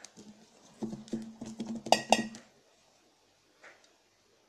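Hand packing shredded cabbage and carrot into a 3-litre glass jar, knocking against the jar so that its hollow body rings in a quick run of knocks. Two sharp glass clinks about two seconds in are the loudest.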